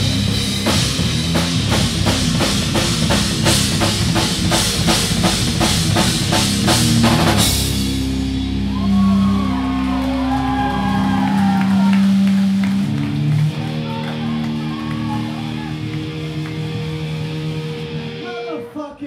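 Live rock band with electric guitar, bass and drum kit playing loud, the drums hitting about three strokes a second. About seven seconds in the drums stop and held guitar and bass notes ring out, with voices shouting over them.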